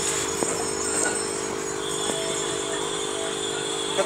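A steady mechanical hum made of several constant pitches, with a faint high steady whine joining about halfway through and a few faint ticks.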